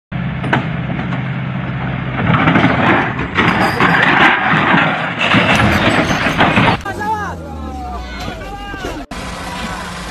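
A tipper truck's diesel engine runs with a steady low hum as the loaded trailer body is raised. From about two seconds in a louder, rougher noise joins it, and it all cuts off suddenly near seven seconds. After that a man's voice is heard.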